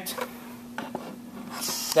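A BNC cable and connector being handled while it is plugged into a DAQ input: soft rubbing with a couple of light clicks, over a faint steady hum.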